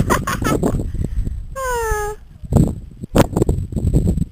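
A voice gives one short drawn-out call that falls in pitch about one and a half seconds in, over uneven knocks and a low rumble.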